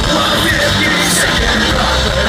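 Punk rock band playing live and loud: electric guitars, bass and drums together, heard from the audience.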